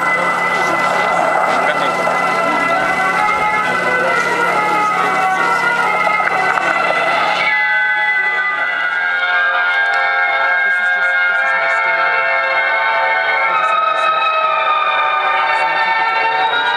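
Film soundtrack music played loud through an outdoor loudspeaker system. For the first half it sits under a steady electrical hum and hiss, which cut out abruptly about halfway through, leaving the music clearer.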